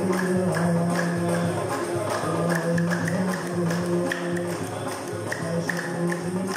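Live ensemble of oud, banjos and guitar playing together over the steady beat of a hand-struck frame drum with jingles.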